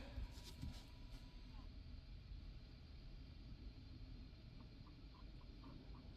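Near silence: faint low room tone, with a thin steady tone for about the first second and a half and a few faint short ticks near the end.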